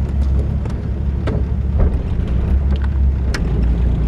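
1965 Ford Mustang convertible's engine running smoothly just after a cold-free quick start, a steady low rumble with a few faint clicks over it.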